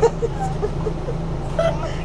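City bus standing still with its engine idling, a steady low hum heard from inside the cabin, broken by short voice-like sounds right at the start and again just past halfway.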